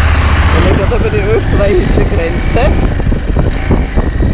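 KTM 790 Adventure's parallel-twin engine idling steadily, then running less evenly from about a second in as the bike moves off. A muffled voice-like sound rides over it for a couple of seconds.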